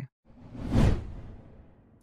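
A whoosh transition sound effect: a swell of noise with a deep rumble underneath that rises quickly about a quarter second in, peaks, and fades away over the next second.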